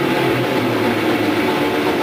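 Grindcore band playing live: a loud, unbroken wall of distorted electric guitar and bass with drums.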